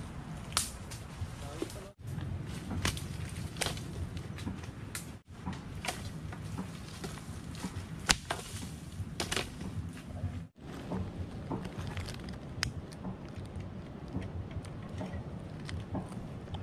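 Dry dead branches and twigs being snapped, thrown onto a pile and handled, giving sharp irregular cracks and clatters over a steady low outdoor rumble.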